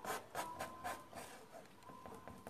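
Painting spatula scraping and dabbing acrylic paint onto canvas: a quick run of short scratchy strokes in the first second or so, then fainter ones.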